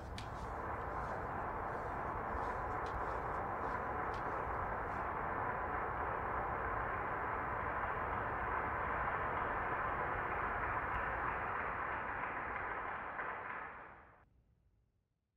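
A steady rushing noise with a few faint ticks in the first few seconds, cutting off suddenly at the end.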